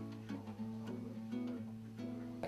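Eterna acoustic guitar fingerpicked: single plucked notes, a new one every half second or so, ringing over a held low bass note.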